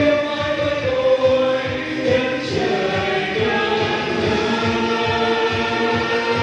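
A small vocal ensemble singing together in long held notes over a backing track with a steady beat.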